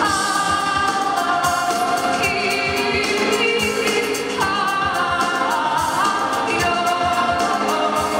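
Live band music with a woman singing long held notes over a steady beat, accompanied by cello, electric guitar and drums.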